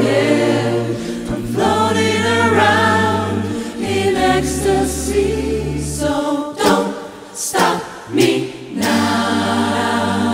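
Large mixed a cappella choir singing in harmony over a sustained low bass vocal line. About two-thirds of the way through, the chords break into a few sharp percussive hits before the full harmony returns.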